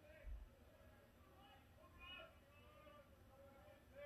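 Near silence: faint, distant voices and one soft low thump just after the start.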